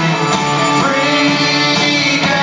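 Live rock band playing an instrumental passage: electric guitars holding sustained notes over drums, with no vocals.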